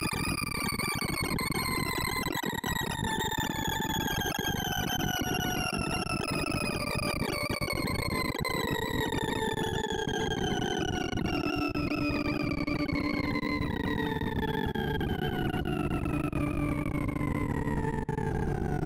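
ArrayV sorting-visualizer tones for Bubble Sort on a reversed array: a rapid, dense stream of synthesized beeps, each pitched by the value of the bar being compared or swapped, merging into a harsh buzzy tone. The tone glides steadily down in pitch as the largest remaining values are carried to the end.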